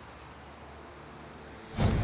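A faint, steady outdoor background noise with a low hum, then a sudden loud hit near the end that carries on as a low, sustained sound.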